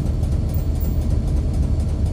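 Low, steady rumble of road traffic, led by a heavy dump truck's diesel engine as the truck drives off through an underpass.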